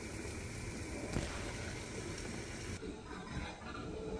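Quiet, steady hiss of a gas stove burner heating a lidded saucepan of water, with the brighter part of the hiss dropping away about three seconds in.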